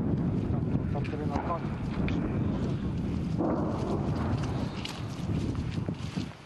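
Wind buffeting the camera microphone: a steady, heavy low rumble, with brief snatches of voices in between.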